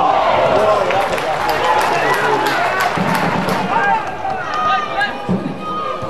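Several voices shouting and calling out at once from players and spectators at a live football match, with no clear words.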